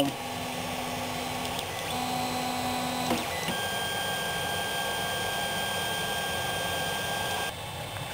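Creality CR-10 3D printer's stepper motors running an auto-home, driving the bed, extruder carriage and Z axis to their home positions. Two short low hums of about a second each are followed by a steady higher whine of about four seconds, which stops shortly before the end.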